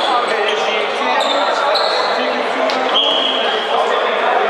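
Game sounds in a sports hall: a hubbub of players' and spectators' voices, a handball bouncing on the wooden floor, and a few short high squeaks.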